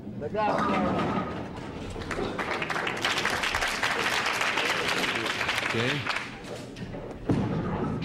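A bowling ball thudding onto a wooden lane and running into the pins, followed by about four seconds of studio audience applause and calls.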